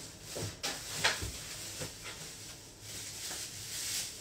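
A few faint knocks and rustles of food containers being moved about in a refrigerator, over a low steady hiss.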